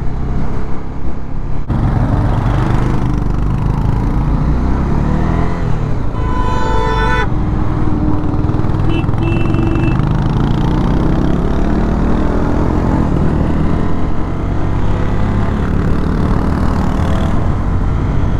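Honda CB300F single-cylinder motorcycle engine running under way, with heavy wind rush over the microphone. A vehicle horn sounds once for about a second partway through, followed a little later by a short high beep.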